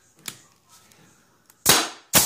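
A brad nailer fires a nail into the wooden frame with one loud, sharp shot near the end. A faint click comes about a quarter second in.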